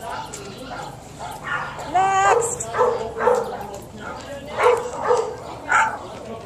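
Dogs barking and yipping in short bursts, with a rising pitched yelp about two seconds in.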